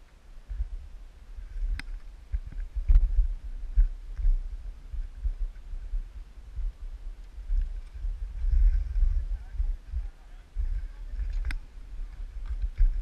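Gusty low rumble of wind on the camera microphone, with a few sharp clicks, the loudest near the end, and faint voices in the distance.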